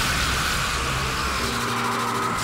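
Cartoon magic-blast sound effect: a loud, dense rushing noise with a tone slowly falling through it. The deep rumble under it drops out about three quarters of the way in, as sustained low musical notes come in.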